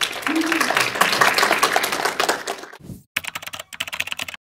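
A small audience clapping, the separate claps distinct. The clapping breaks off briefly about three seconds in, then picks up again.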